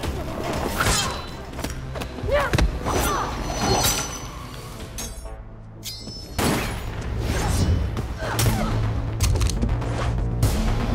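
Fight-scene soundtrack: dramatic score with a string of hard hits and thuds from punches and kicks, and a crash. The sound drops away briefly about halfway, then the music comes back with a heavy, steady bass.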